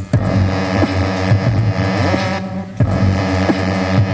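Live electronic hip-hop music: sustained synthesizer tones played on a keyboard controller over a steady programmed drum beat.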